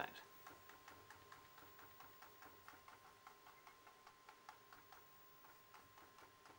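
Near silence with faint, even ticking, about four ticks a second, over a faint steady tone.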